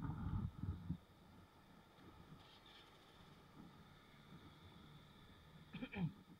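Low, muffled sound of a motorbike ride picked up by a handlebar-mounted action camera. Irregular low rumbling buffets fill the first second, then it falls to a faint steady hum, with a short bump near the end.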